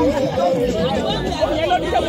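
Several people talking at once: overlapping chatter of a small group, with no single voice standing out.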